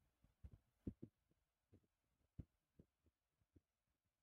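Near silence: room tone with a scattering of faint, irregular low thumps, like small knocks or bumps near the microphone.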